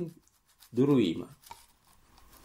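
Speech: a man's voice says one short word about a second in, between quiet pauses.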